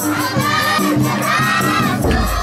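A crowd of children shouting and cheering together in wavering, rising and falling voices, with sholawat music of drums and singing continuing underneath.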